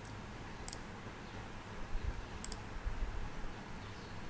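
Computer mouse clicking twice, about a second in and again about halfway through, each a short sharp tick over a low steady background hum.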